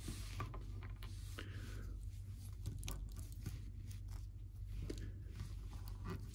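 Faint clicks and rubbing of a small plastic action figure being handled, a loose hand piece being fitted onto its wrist and the figure posed. A low steady hum runs underneath.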